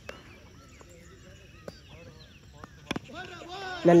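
Cricket bat striking a tennis ball once, a single sharp knock about three seconds in, over faint distant voices across the ground.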